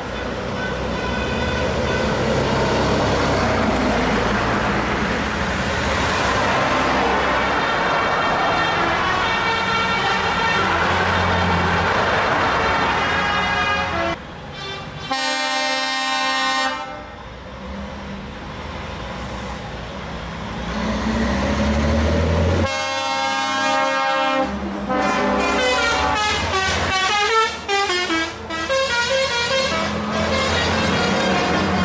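Convoy of tow trucks driving past, their diesel engines running. About halfway through, a truck air horn gives a held blast of a second and a half. A second blast comes later, followed near the end by horn tones that waver and slide in pitch.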